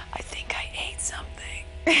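A woman whispering and laughing under her breath in short, breathy bursts.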